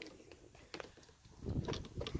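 Faint handling noise of a phone held close: a couple of light clicks, then a low rumble building in the last half second.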